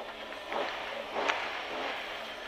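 BMW M3 E30 Group A rally car's four-cylinder engine idling at the start line, heard from inside the cabin as a steady noise with a soft swell a little after half a second.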